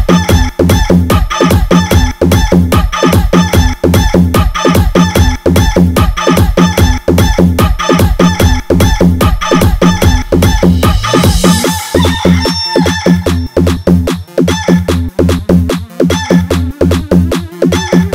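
Electronic DJ dance remix with a fast, heavy bass beat, about four hits a second, built around rooster crowing and clucking samples. About two-thirds of the way through the beat changes, and a rising sweep builds near the end.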